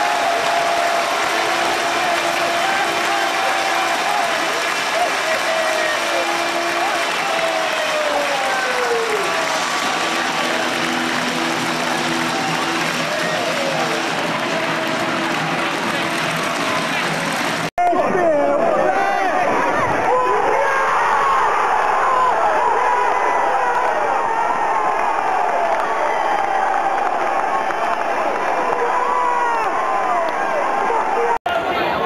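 Football crowd cheering and shouting after a home goal. About two-thirds of the way through the sound cuts abruptly to a closer recording, full of individual fans' shouting voices.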